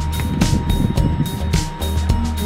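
Background music with a steady beat, overlaid with a low rumbling noise for about a second in the middle.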